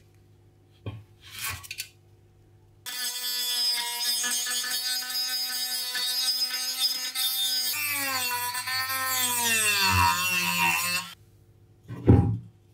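A handheld rotary tool with a sanding drum sands the aluminium band-saw housing. It starts about three seconds in with a steady high whine; near eight seconds its pitch drops and keeps falling, and it cuts off about a second before the end. A couple of brief rubs of handling come before it, and a knock comes at the very end.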